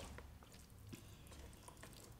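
Near silence with a few faint, soft wet clicks: fingers mixing rice and curry by hand in a plastic thali tray.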